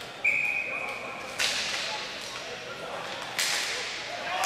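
Referee's whistle blown once for about a second, then two sharp echoing cracks about two seconds apart from play on the ball hockey rink.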